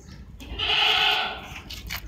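A single bleat-like animal call lasting about a second, from an animal in the pen behind the chicken wire.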